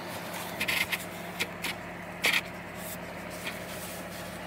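A few short rustles and scrapes from gloved hands handling snake eggs in a plastic tub of incubation substrate, over a steady low hum.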